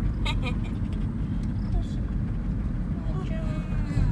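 Steady low rumble of road and engine noise inside a moving car's cabin, with a few short bits of voice over it, near the start and again about three seconds in.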